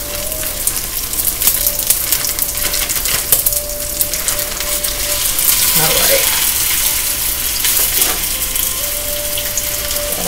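Cubed raw chicken sizzling and crackling in hot oil in a wok as the pieces are dropped in, with many small pops over a steady hiss that swells a little about halfway through.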